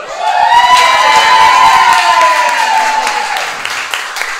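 Audience clapping and cheering, with a long high whoop from several voices that rises, holds for about three seconds and fades as the clapping goes on.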